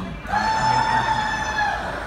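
A high-pitched held shriek from a person's voice, about a second and a half long, dropping off slightly at the end.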